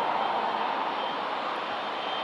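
Jet engines of a Boeing 757 airliner rolling along the runway after landing: a steady jet noise with a faint high whine, easing off slightly near the end.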